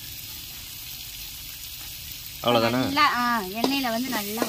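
Steady sizzle of chilli powder and tomatoes frying in oil in an aluminium kadai, stirred with a ladle. About two and a half seconds in, a person's loud voice with sliding pitch comes in over it.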